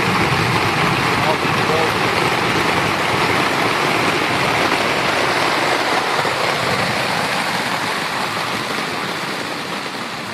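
Heavy rain pouring down steadily onto grass and sodden ground, easing off slightly near the end.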